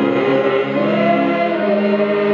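Church congregation singing a hymn together, many voices holding long notes that change slowly.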